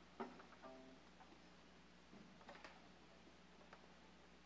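Near silence in a large hall, broken about a quarter second in by a few faint plucked string notes from the waiting string orchestra, then a couple of soft knocks a little past the middle.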